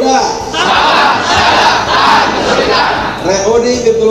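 A crowd shouting and cheering together for about three seconds. Music sounds before and after the shout and comes back near the end.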